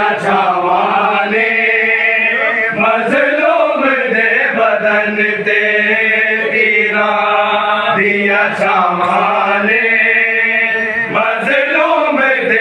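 Men's voices chanting a nauha, a Muharram mourning lament, in long held notes broken by rising-and-falling phrases about every four seconds.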